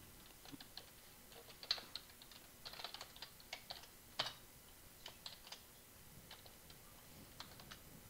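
Faint computer keyboard typing: scattered keystrokes in short irregular bursts, with a couple of louder key presses.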